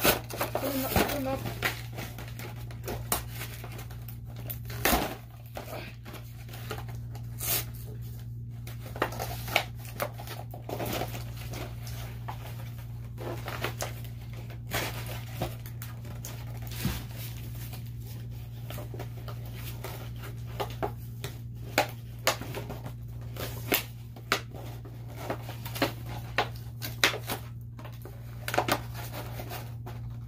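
Irregular clicks and light crinkling of plastic toy packaging being handled off-camera, over a steady low hum.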